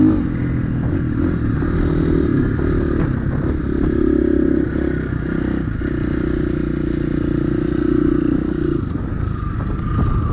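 KTM dirt bike engine running at steady throttle while riding a dirt trail, easing off briefly about three times before pulling again.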